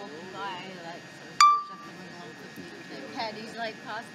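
One loud, sharp clink about a second and a half in, ringing briefly before it fades, over faint background chatter of voices.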